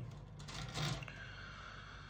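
Faint handling sounds of a plastic miniature-kit sprue and paper being moved about on a cloth table mat, with one brief soft rustle near the middle over a low steady hum.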